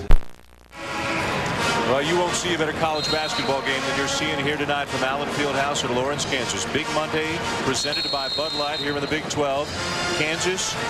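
A sharp click and a half-second dropout at the cut, then basketball arena sound during a timeout: crowd noise with music playing in the hall.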